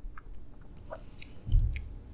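Quiet mouth sounds of people tasting wine: small wet sips and lip-smacking clicks scattered through the moment, with a soft low thump about one and a half seconds in.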